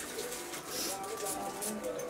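A perfume spray bottle giving one short hiss of a spritz, a little under a second in, over faint voices in the room.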